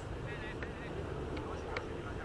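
Faint, distant voices of players and onlookers at a baseball field over a steady low rumble, with a few small clicks.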